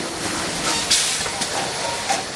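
Measuring-cup automatic cup filling and sealing machine running steadily, with a short hiss of released compressed air about a second in as its pneumatic stroke cycles.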